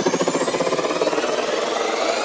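Electronic dance music build-up in a house/techno DJ mix: rising synth sweeps climb steadily in pitch over a rapid, quickening drum roll, with the bass cut out ahead of the drop.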